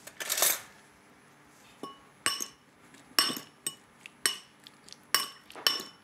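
Spoon clinking against a glass mixing bowl while diced persimmon and mint are stirred together, about six separate ringing clinks, after a brief rattle near the start.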